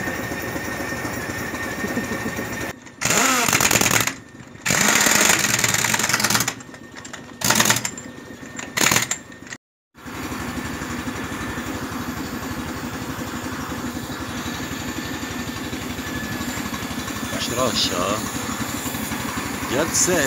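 An engine idling steadily, with loud bursts of hissing in the first half: a long one about three seconds in, a longer one about a second later, then two short ones. The sound drops out completely for a moment just before the middle.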